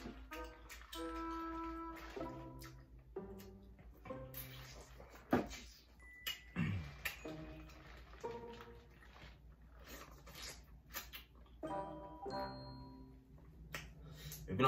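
Soft background music of held notes that change every second or so. Over it come scattered short crinkles and clicks from hands working in a plastic seafood-boil bag and peeling shellfish.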